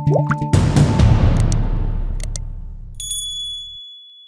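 Short music sting: quick plucked, clicking notes, then a loud swelling hit about half a second in that fades away over about three seconds. A bright bell-like ding sounds near the end.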